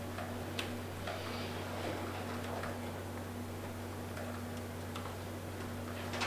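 Quiet room tone in a meeting room: a steady low electrical hum with a few faint, scattered clicks.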